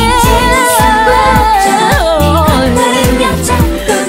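Korean pop song: a female voice singing long, wavering held notes over a band with bass and a steady drum beat.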